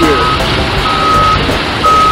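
Backup alarm on heavy construction equipment beeping, a single steady tone about once a second, over a low machinery rumble.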